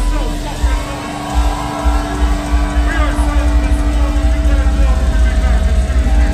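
Deathcore band playing live: heavily distorted low guitars and bass with pounding drums, and the vocalist screaming over them. The low end drops back briefly about a second in, then the heavy rhythm returns.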